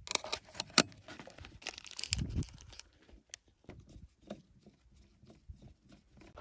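Handling noise from a small plastic digital multimeter: a quick run of sharp plastic clicks and rustles in the first second as its battery cover is fitted, then sparse faint ticks as a small screwdriver turns the cover screw.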